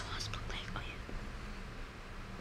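A boy whispering briefly under his breath in the first second, over a faint steady low hum.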